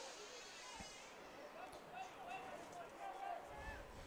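Faint, distant voices on the field and sidelines, with low open-air stadium background.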